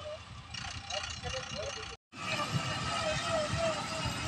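Diesel engine of a loaded Eicher tipper truck running in deep loose fly ash, with voices over it. The sound cuts out for a moment about halfway through.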